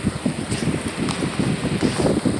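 Irregular low rustling and rumbling on a phone's microphone held close among pillows and bedding.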